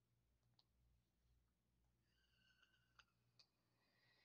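Near silence: room tone with a low hum and a few faint clicks, and a faint high tone in the second half.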